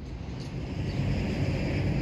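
A passing vehicle heard outdoors, its engine hum and road noise growing steadily louder as it approaches.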